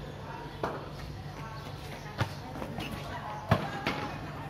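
Four sharp knocks of a cricket ball hitting the tiled floor and the bat, the loudest about three and a half seconds in, over a murmur of voices.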